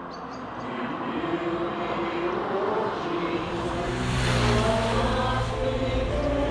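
A road vehicle driving past close by on a street, its engine and tyre noise swelling to a peak about four and a half seconds in and staying loud to the end.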